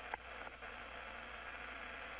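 Steady static hiss of the open space-shuttle-to-ground radio link, with a faint click just after the start.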